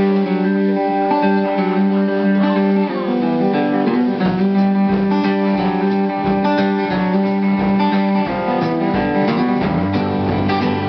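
Live band playing a song, led by guitars, with chords held for a second or two at a time.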